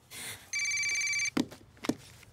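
A telephone ringing once, a single ring of just under a second with a fast, even trill, followed by two short clicks as the handset is picked up.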